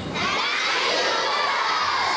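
A large crowd of children shouting and cheering together in reply to a greeting: one long shout of many voices that swells and then slowly fades.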